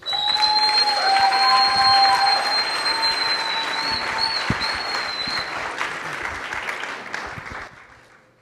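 Audience applause that starts all at once, with long held whistles over it, and dies away near the end.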